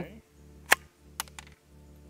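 Sharp metallic clicks from the action of a Smith & Wesson M&P 15-22 .22 rifle being worked by hand at the charging handle to clear a recurring feeding jam: one loud click under a second in, then two lighter ones.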